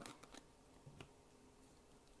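Near silence with a few faint clicks and small handling sounds as a container of Zombie Skin thick liquid latex is opened, the sharpest click about a second in.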